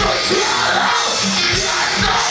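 Metalcore band playing live at full volume: distorted guitars and pounding drums under shouted, screamed vocals, recorded from the audience.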